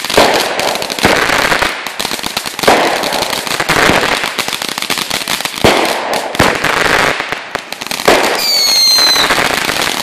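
Aerial fireworks bursting in quick succession, a sharp bang about every second or so, with crackling between the bangs. Near the end a short whistle sounds, dropping slightly in pitch.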